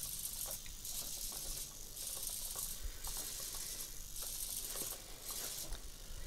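MG90S micro servos in a 3D-printed quadruped robot whirring in repeated short runs as the robot shifts its body backwards and forwards, with a few faint ticks between them.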